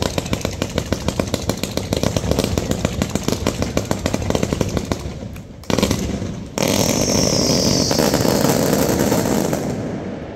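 Fireworks display: a rapid volley of launches, many shots a second, that stops about five and a half seconds in. A second later a dense, steady rush of crackling and hissing takes over, with a high hissing note that slowly falls. It fades near the end.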